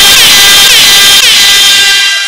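Air horn sound effect blaring loudly in a continuous blast, with a pitch dip that repeats several times.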